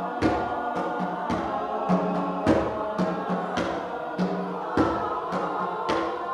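Mixed choir singing in harmony, over an accompaniment that strikes chords at a steady beat, a little under two a second.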